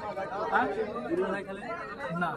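People talking, several voices in Bengali at once, with no bat or ball sound.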